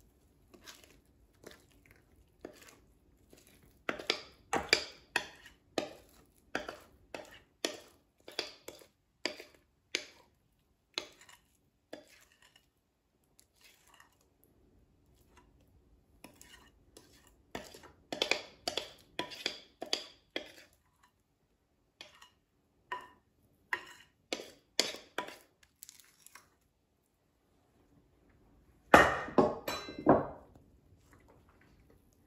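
A spoon-spatula scraping thick batter out of a glass mixing bowl, in runs of short scraping and clinking strokes against the glass with pauses between. There is a louder knock near the end.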